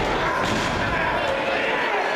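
A single heavy impact on the wrestling ring's boards and mat about half a second in, over a hall full of crowd voices and shouting.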